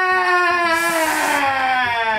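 A man's excited yell held on one long drawn-out note, slowly falling in pitch and cutting off just before the end. A brief hiss sounds about a second in.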